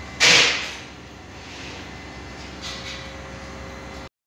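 A brief, loud whoosh of noise about a quarter second in, followed by a steady low background with a faint steady tone.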